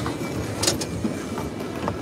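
Steady outdoor background noise with a brief hiss about two-thirds of a second in and a few faint clicks.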